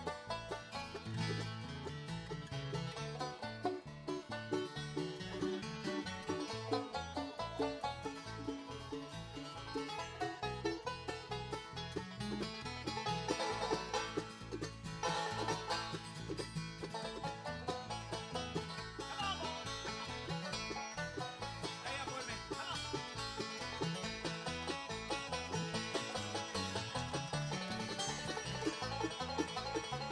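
Live bluegrass instrumental: a banjo picking a fast run of notes over acoustic guitar rhythm, with a steady beat throughout.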